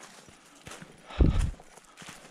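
Footsteps on a trail of dry fallen leaves: a heavy footfall lands about a second in, with the leaves crunching, and lighter rustling before it.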